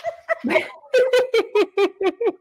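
Women laughing hard. About a second in it breaks into a fast, even run of 'ha-ha' bursts, about five a second.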